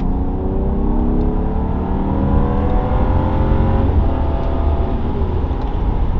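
A 2012 BMW 535i's turbocharged straight-six accelerating, heard from inside the cabin. The engine's pitch rises for about four seconds, drops as the automatic shifts up, then climbs again, over a steady low road rumble.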